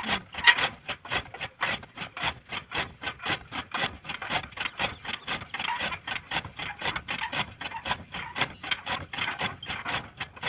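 Hand-cranked chaff cutter chopping green fodder: the flywheel's blades slice through the stalks in quick, even rasping strokes, about four a second.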